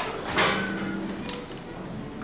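Rustling and knocking as many young string players raise their violins and bows into playing position, with a noisy bump about half a second in and a short low tone just after it.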